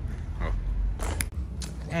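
Handling noise from a phone camera carried by someone walking: a low rumble of wind and movement on the microphone, with a few sharp clicks about a second in as the phone swings down.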